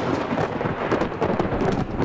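Thunderstorm: a long rumble of thunder over heavy rain, easing off near the end.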